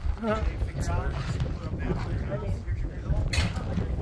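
People's voices talking, over a steady low rumble of wind on the microphone. A short noisy scuff comes near the end.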